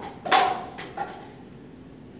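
A man's short shouted call about a third of a second in and a shorter, weaker one about a second in, part of a quarterback's snap-count cadence, then quiet room tone.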